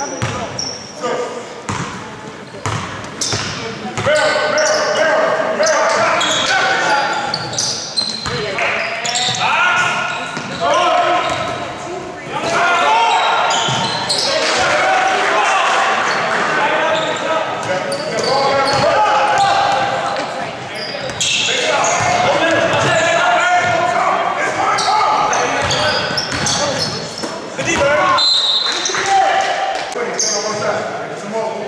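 Basketball game sound in a gym: a ball bouncing on the hardwood floor amid the voices of players and spectators, with the hall's echo.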